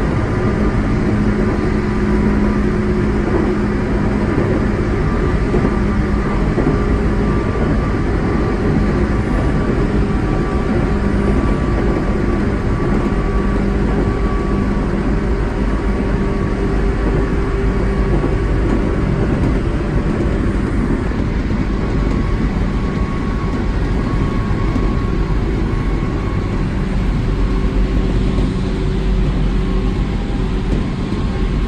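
Tobu Skytree Line electric train running, heard from inside its cab: a steady rumble of wheels on rail with a constant low hum over it.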